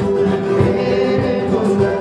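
A Christian band playing live: voices sing held notes over strummed guitars, with a large wooden bass drum beating a steady pulse.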